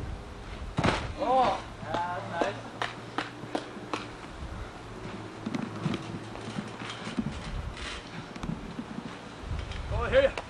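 A body slam lands on a tarp-covered mat with a thud about a second in, followed by short shouts from onlookers. A few scattered knocks and footfalls come after.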